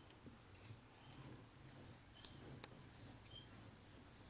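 Near silence, with a few faint scattered clicks and short high-pitched blips.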